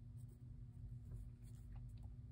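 Faint scratching of a mechanical pencil drawing a few short, light strokes on sketchbook paper, over a steady low room hum.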